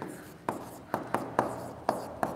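A stylus writing on the glass screen of an interactive smart board, with about five short sharp taps as the pen tip strikes the screen.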